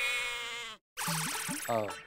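A held, nasal, bleat-like tone lasting under a second that cuts off abruptly. After a short pause, background music follows with a man's brief drawn-out 'aa'.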